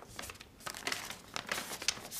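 Sheets of paper rustling as they are lifted and turned over, in a string of short, irregular crisp rustles.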